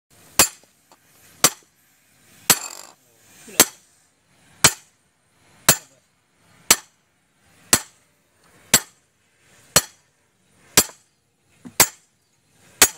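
Sledgehammer striking steel about once a second, twelve sharp ringing metallic blows, driving a large bearing onto its shaft: hammering it home, an install method the title calls improper and able to damage the bearing.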